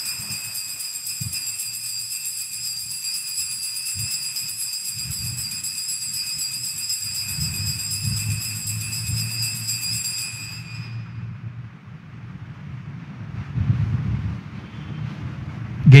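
Altar bells shaken in a continuous shimmering ring at the elevation of the consecrated host, stopping about eleven seconds in.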